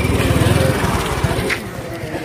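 Small engine running close by with a rapid, even pulse, loudest in the first second and then fading.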